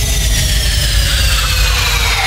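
Trance remix transition: a synthesised sweep of slowly falling tones over a rushing noise and a steady low bass.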